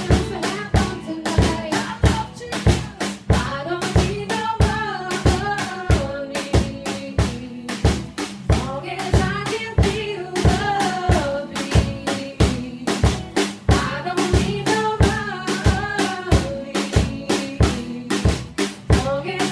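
Live band music: a woman singing over a steady beat on bass drum and snare, with rim clicks, accompanied by a strummed ukulele.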